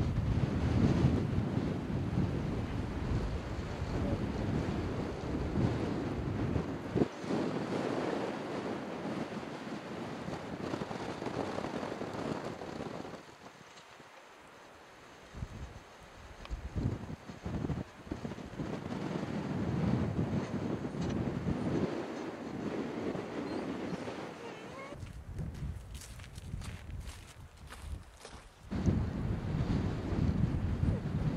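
Wind gusting over the microphone, a rumbling noise that rises and falls, easing off to a lull about halfway through and again near the end.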